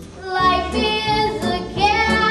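A young female voice singing a show tune with vibrato over live instrumental accompaniment with bass and cymbals. The voice comes in a fraction of a second after a short lull at the start.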